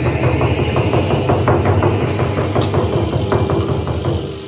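A small live band playing at full level, with electric guitar and hand percussion, and a frame drum keeping a steady beat of sharp strokes.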